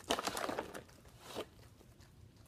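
A husky taking a treat from a hand close to the microphone: a crackly, crunching burst of about half a second, then a second shorter one.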